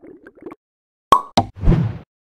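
Sound effects for an animated outro wipe: a few faint short blips, then two sharp pops a little after a second in, followed by a brief rushing burst near the end.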